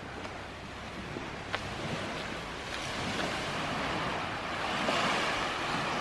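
Small sea waves washing onto a sandy beach, a soft steady wash that swells gradually louder toward the end.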